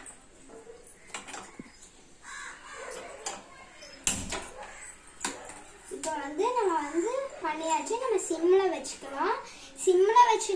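Gas stove burner being lit: a few sharp clicks from the knob and igniter, then the burner catching with a short low thump about four seconds in. From about six seconds a child talks in a sing-song voice, louder than the stove.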